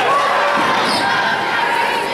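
Basketball game sound in a gym: a ball bouncing on the hardwood court under steady crowd voices.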